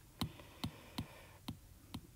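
Stylus tip tapping on a tablet's glass screen: five light clicks about half a second apart.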